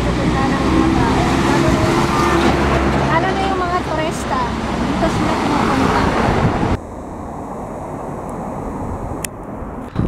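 Road traffic driving past close by, with a car's engine drone and tyre noise, under a woman talking. The sound cuts off abruptly about two-thirds of the way through to a much quieter outdoor background.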